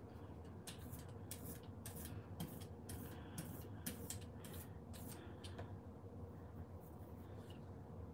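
Flat paintbrush dabbing and scrubbing white acrylic paint through a plastic stencil onto a gel printing plate: a run of short, faint, scratchy brush strokes, about three a second, stopping after about five seconds.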